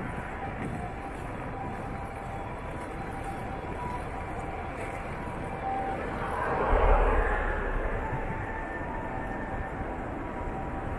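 Steady street-traffic hum and riding noise from a bicycle on a city street, with one louder rushing swell and low rumble that peaks about seven seconds in and fades over the next two seconds.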